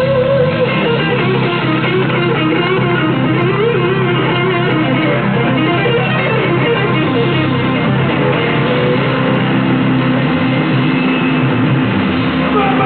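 Live blues band playing an instrumental passage: an electric guitar plays a lead line that winds up and down in pitch over bass guitar and the rest of the band.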